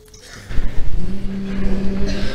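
A church congregation getting to its feet from wooden pews: a low rumble of shuffling and pew noise begins about half a second in. About a second in, a single steady low note is held, the starting pitch for the a cappella hymn that follows.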